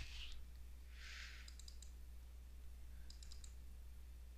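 Faint clicks of a computer mouse: two quick clusters of clicks, about a second and a half in and again around three seconds, over a low steady hum.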